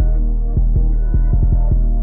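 Trap beat playing back from FL Studio: a deep, sustained 808 bass hitting in a rhythmic pattern, with a quick stutter of short 808 notes about a second and a half in, under a synth melody.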